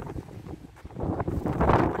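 Wind buffeting the microphone in uneven gusts, a low rumble that dips in the first second and grows louder in the second.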